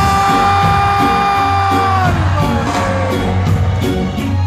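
Live reggae band playing loudly through a venue's PA, recorded from within the crowd: bass and drums under one long held note that slides down about two seconds in.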